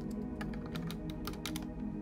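Plastic Lego bricks clicking as a plate assembly is pressed onto a small model: a quick run of sharp clicks in the middle, over soft ambient background music.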